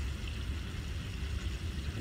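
Steady low rumble with a faint hiss over it: outdoor background noise.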